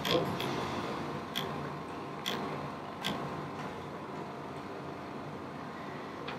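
Quiet room tone with four faint clicks in the first three seconds.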